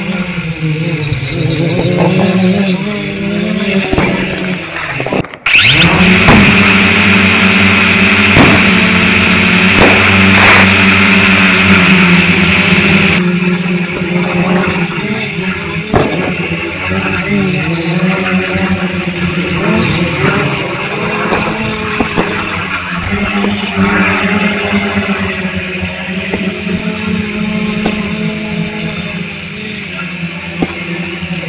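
Dromida Vista quadcopter's motors whirring steadily, their pitch wavering as it flies, with sharp bangs of aerial fireworks several times. From about five to thirteen seconds in, a loud hiss covers the motors.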